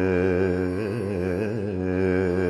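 Male voice singing a Carnatic alapana in raga Saveri, on open vowels over a steady drone. A held note breaks into quick oscillating gamakas in the middle, then settles again near the end.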